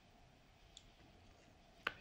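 Near silence: faint room tone with two small clicks, a faint tick a little under a second in and a sharper click near the end.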